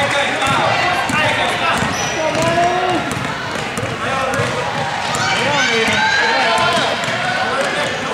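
Basketball dribbled on a hardwood gym floor, with voices of players and spectators around it.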